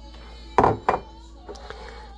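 Kitchenware knocking on a counter: a heavy knock about half a second in and a sharper one just after, then a few light clinks near the end, as a container is handled to pour a drink.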